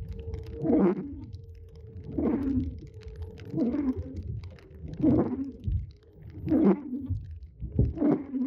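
Car windshield wipers sweeping across rain-wet glass, one rubbing swish about every one and a half seconds, over the low rumble of the car driving.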